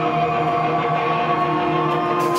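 Live rock band playing, with electric guitars holding long sustained notes.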